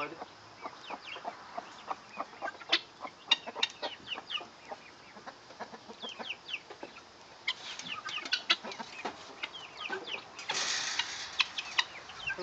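Backyard chickens clucking and chirping, with many short, high calls scattered throughout. A brief rustling burst comes about ten and a half seconds in.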